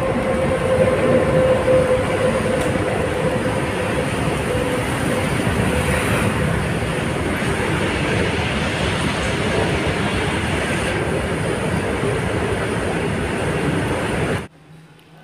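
Steady rush of wind and road noise on a phone's microphone from a moving two-wheeler, with a faint steady hum that fades about five seconds in.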